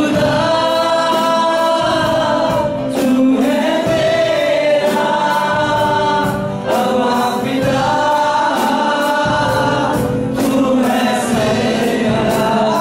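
Live gospel worship song in Hindi, led by a male singer on a microphone with a group of voices singing along, in long held phrases.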